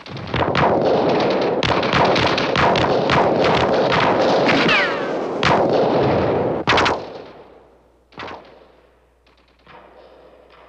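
Battle gunfire: a dense burst of rapid machine-gun fire and shots for about seven seconds, then dying away, with one lone shot about eight seconds in.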